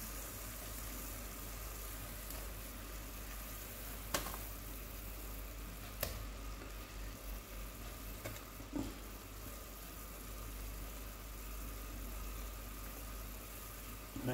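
Sugar syrup boiling steadily in a pot, with a few brief knocks as orange pieces are dropped into it, about four seconds in, six seconds in and twice near the nine-second mark.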